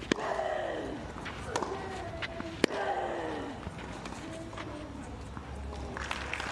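Tennis rally on a clay court: a string of sharp racquet strikes on the ball, the loudest about two and a half seconds in. Several strikes are followed by a player's grunt that falls in pitch.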